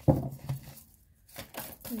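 A deck of reading cards being shuffled by hand. The cards slap and rustle against each other, with a sharp slap at the start, another about half a second in, and a few lighter flicks near the end.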